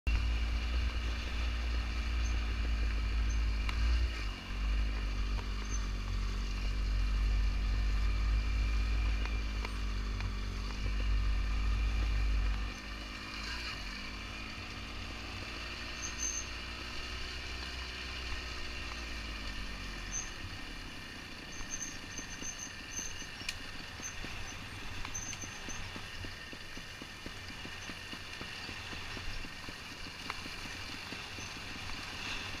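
Trials motorcycle engine running at low revs on a gravel descent, its note rising and falling with the throttle, under a heavy low rumble of wind on the microphone that drops away about halfway through. Later the engine note fades to a quieter steady noise, as the bike rolls with little throttle.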